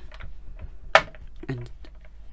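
Small clicks of square stone beads knocking against each other as they are pushed and spaced along a bracelet cord, with one sharper click about a second in.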